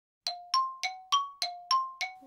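Music cue of bell-like struck notes, about three a second, alternating between two pitches and each ringing briefly; it starts about a quarter second in, after silence.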